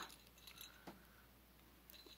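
Near silence: room tone with a couple of faint clicks from a small decorative pine clip being handled.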